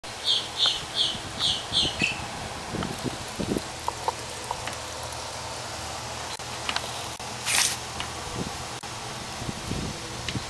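A small bird chirps about five times in the first two seconds, short high calls about two a second. After that come soft rustles and small clicks in hay where a spotted skunk is feeding from a steel bowl, with a short rustling hiss about seven and a half seconds in.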